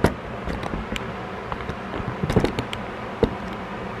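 Handling noise from the recording device being picked up and repositioned by hand: scattered knocks and taps over a low rustle of fabric and movement.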